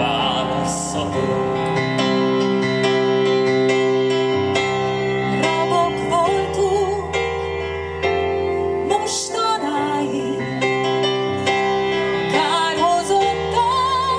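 A live band plays a slow, tender passage over sustained keyboard chords. A woman's voice sings a melody with vibrato from about five seconds in.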